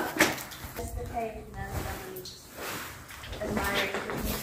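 Soft, quieter speech from people nearby, with a few light knocks and handling noises.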